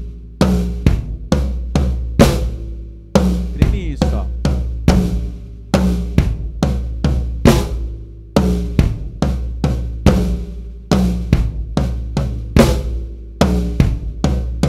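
Acoustic drum kit playing a slow tribal groove in triplets across rack tom, floor tom, snare and bass drum, with the bass drum marking every beat and the toms ringing after each stroke.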